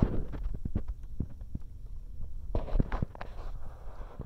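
A crow on a car's glass roof, heard from inside the cabin: a run of irregular taps and knocks from its feet and beak on the glass, bunched in the first second and again past the middle.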